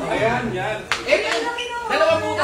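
People talking, with one sharp hand clap about a second in.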